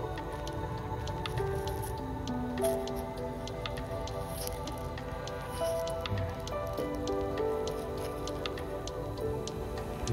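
Background music with slow held notes, over wet crunching and squishing as fingers pry a fossil shark tooth out of gritty sand matrix, with many small clicks and scrapes of grit.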